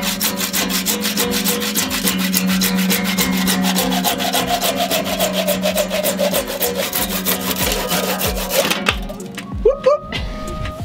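Hand saw cutting through the yellow synthetic rudder-bush material, in quick, even back-and-forth strokes that stop about nine seconds in.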